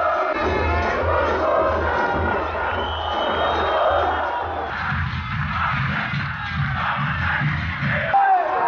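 Football crowd singing chants together over a steady, rhythmic bass-drum beat.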